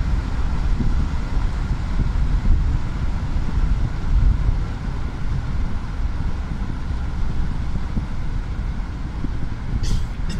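Steady low rumble of a car driving along a road, heard from inside the moving vehicle.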